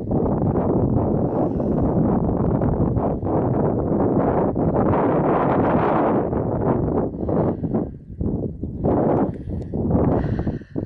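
Wind buffeting the camera microphone: a loud, steady rush that breaks up into shorter gusts and rustles after about seven seconds.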